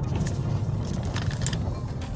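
Car driving, heard from inside: a steady low rumble of engine and road noise, with a few brief rattles about a second in.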